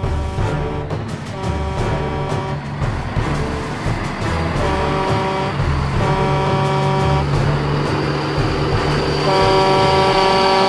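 Semi-truck engine running with several long blasts of a multi-tone horn, the whole growing louder toward the end as the truck approaches.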